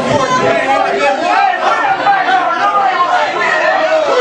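Several people's voices talking and shouting over one another at ringside, with no single voice standing out.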